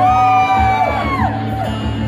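Several audience members whooping with long held calls over acoustic guitar strumming, the calls dying away in the second half.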